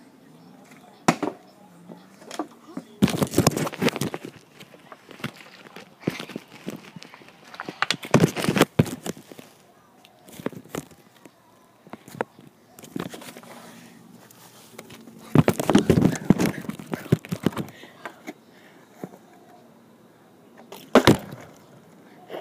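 Plastic water bottle being flipped and landing, knocking and clattering on the ground in five or six separate bursts, mixed with knocks from the camera phone being handled.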